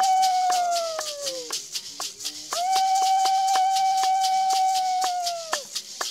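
Several pairs of maracas shaken together in a steady rhythm, about four strokes a second. Over them come two long held high notes: the first slides down in pitch and stops about a second and a half in, and the second starts about halfway through and drops away near the end.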